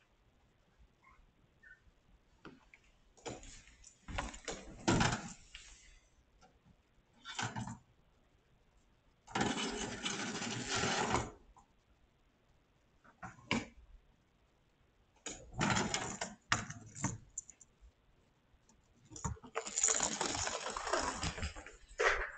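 Bursts of clattering and scuffling, about six of them, each lasting up to two seconds, from kittens chasing and batting a small toy mouse across a hardwood floor.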